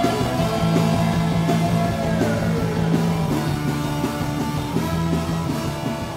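Live ska band playing an instrumental passage, with electric bass, accordion, trumpets and drums. Held high notes slide down in pitch about two seconds in.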